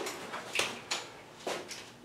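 Safety belt strap and buckle on a power wheelchair being handled, with a few light clicks and soft rustling.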